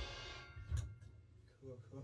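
The last ringing of a rock band's electric guitar, bass and drums dying away, leaving a quiet room with a short knock about a second in. A voice starts faintly near the end.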